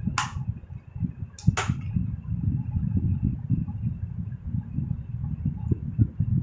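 Two short hissing swishes, one near the start and another about a second later, over a constant low rumbling handling noise. The noise is consistent with hands and hair moving close to the microphone.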